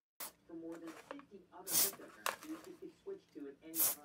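Short hisses from an aerosol can of electrical contact cleaner sprayed through its straw, three brief bursts with the loudest near the middle and near the end, over a quiet voice.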